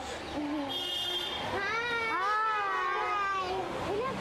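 Metal gate hinges creaking as the gate swings open: a short high squeak, then a long wavering creak that rises and falls in pitch.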